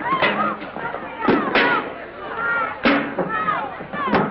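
Staged fistfight: about four sharp punch or slam impacts, the last and loudest near three seconds in, with men shouting and grunting between the blows, on a narrow-band old film soundtrack.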